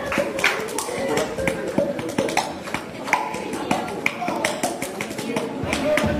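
A crowd clapping along in a steady rhythm, about two to three claps a second, with voices over it. The band comes back in near the end.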